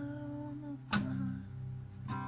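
A man humming a held note over acoustic guitar, with one sharp strum about a second in that leaves the chord ringing.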